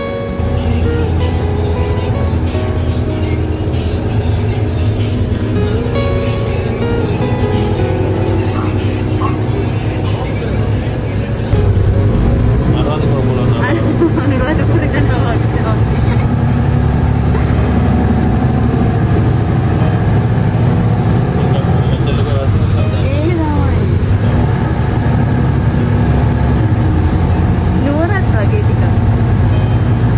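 Steady low rumble of a city bus from inside the cabin as it drives, under background music, with a few short voice-like sounds.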